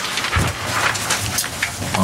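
Sheets of paper being handled and turned close to a table microphone: a dry, crackling rustle, with a low thump about half a second in.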